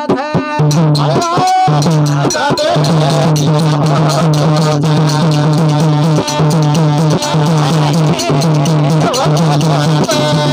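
Bhajan music: a dholak drum and small brass hand cymbals (manjira) play a brisk, even rhythm over a steady low drone, with a voice gliding in pitch briefly near the start.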